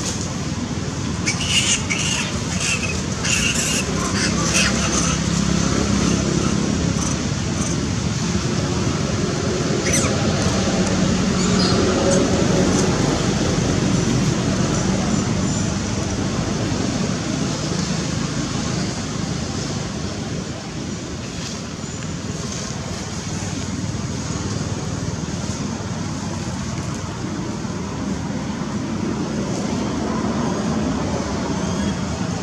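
Steady low outdoor background rumble, with a cluster of short high-pitched chirps a couple of seconds in and a single sharp click about ten seconds in.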